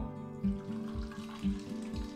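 Water pouring from an electric kettle into a plastic bottle, under background music with a steady beat.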